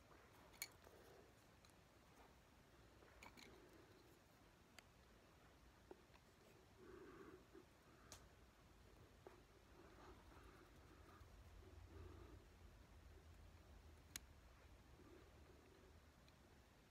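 Near silence: faint handling noise with a few light, scattered clicks of wooden popsicle sticks being fitted together by hand.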